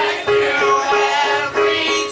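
Small live rock band playing a song: drums, electric guitar and keyboard, with a sung vocal over a note repeated in a steady pulse.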